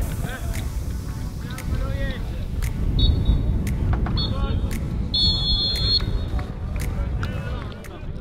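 A referee's whistle blown three times on a football pitch, two short blasts about three and four seconds in and a longer one near six seconds, over a steady low rumble of wind on the microphone and players' distant shouts.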